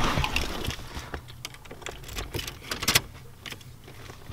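A key ring jingling and clicking as a key is fitted into a truck's steering-column ignition lock, with rustling early on, a run of small clicks and one sharper click about three seconds in.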